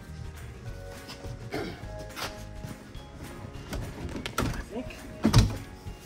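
Background music, over which a truck's seat-bottom cushion is worked loose from its seat frame with a few knocks and rattles, the loudest a sharp thunk about five seconds in as it comes free.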